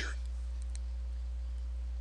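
A low, steady hum with a few faint, light clicks in the first second.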